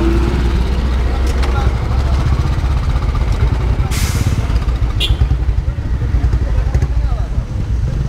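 Royal Enfield single-cylinder motorcycle engines idling with a steady low, rough thump. A short burst of hiss comes about halfway through, followed by a click.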